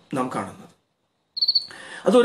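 A man's voice speaking briefly, cut off by a moment of dead silence. Then comes a short, high chirp of several quick pulses, lasting about a quarter second, followed by faint low noise.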